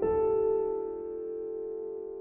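Slow, soft piano music. A chord is struck at the start and left to ring, fading gradually.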